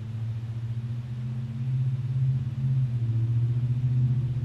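A steady low drone that swells over the first couple of seconds and then holds, with a slight flutter.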